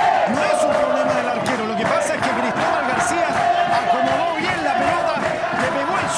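Football supporters in the stands chanting together, a steady mass of voices holding a sung line over the general crowd noise.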